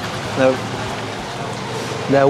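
Steady street traffic noise, with one short spoken syllable about half a second in.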